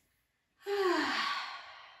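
A woman's long audible sigh, starting about half a second in: a breathy exhale whose pitch falls as it fades. It is a relieved out-breath as she releases a hamstring stretch and lets her body go slack.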